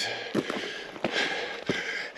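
Footsteps on loose rock and gravel: a few short crunching steps.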